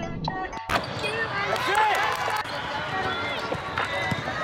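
Indoor volleyball rally in a large echoing hall: the ball struck a few times, players and spectators calling out and cheering, with high squeaks over the top and music playing underneath. The sound cuts out briefly about half a second in.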